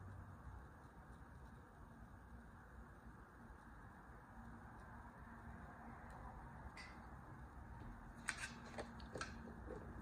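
Near silence with faint room hiss. Near the end come a few light taps and rustles as paper cards are handled and moved on a cutting mat.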